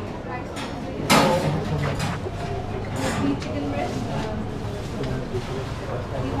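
Indistinct chatter of several people's voices, with a few sharp knocks, the loudest about a second in.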